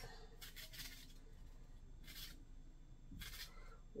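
Kitchen knife slicing through an onion held in the hand: a few faint, crisp cuts, spaced out, against quiet room tone.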